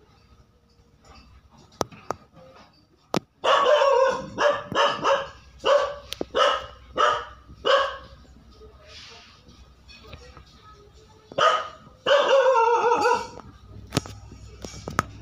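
A dog barking off camera: a run of about eight short, loud barks, a pause, then a few more barks near the end, with a few sharp clicks before the barking starts.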